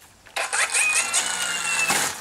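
Cordless electric DeWalt string trimmer switched on: its motor starts suddenly and whirs loudly with a rising, then steady whine, cutting off near the end.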